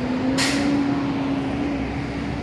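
Street traffic noise: a steady engine hum from a heavy vehicle, with a short sharp hiss of air about half a second in.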